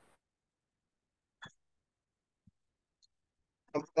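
Near silence, with one short click about a second and a half in and two fainter ticks later.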